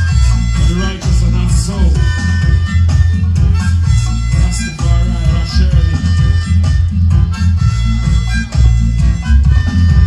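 Roots reggae played loud over a sound system: a heavy bass line and a steady beat under a wavering melody.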